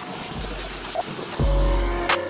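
Wet/dry shop vacuum sucking standing water off a car's floor pan, a steady rushing hiss. Background music comes in with a deep bass hit about one and a half seconds in.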